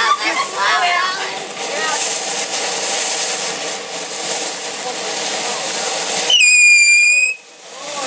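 Ground fountain firework hissing steadily as it sprays sparks. Near the end a loud, high, steady firework whistle sounds for about a second, dipping slightly in pitch as it starts.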